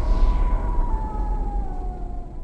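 Trailer sound-design drone: a deep rumble under a sustained, siren-like tone that slowly falls in pitch, fading toward the end.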